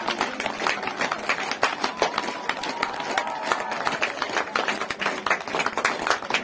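A crowd clapping with many sharp, irregular claps, mixed with voices.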